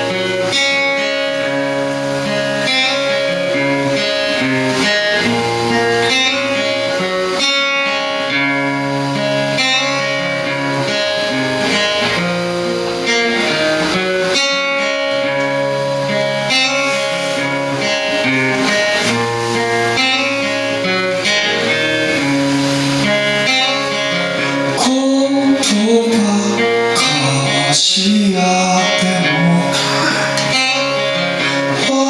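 Live acoustic band music: acoustic guitar strumming and electric guitar playing chords and melodic lines together, with a cajon played by hand. A voice comes in singing near the end.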